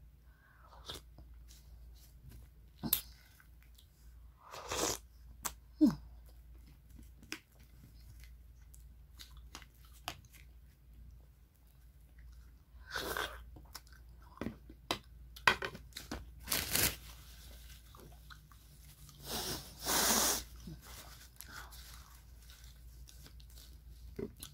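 Passion fruit being eaten from the shell with a metal spoon: scattered crunches of the seeds being chewed and a few sharp spoon clicks, with quiet gaps between them. A longer, louder mouth noise comes about twenty seconds in.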